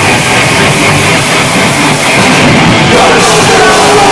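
Punk rock band playing live and loud, with electric guitars, a dense unbroken wall of sound.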